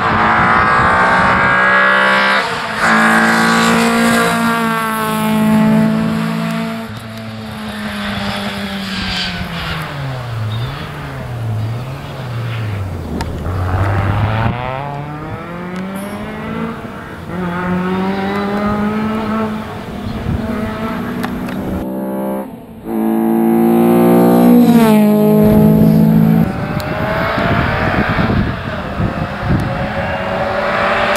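Rally car engines at full throttle, revving up through gear changes. Around the middle the revs fall twice and climb again as a car slows for a corner and pulls away, and another car's engine grows louder near the end.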